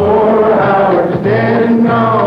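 A crowd singing the chorus of a country-folk song together in unison, holding long notes.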